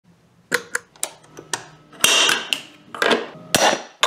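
A metal guitar-pedal enclosure being handled by hand: a run of sharp clicks and knocks, with a longer scraping rattle near the middle and another near the end.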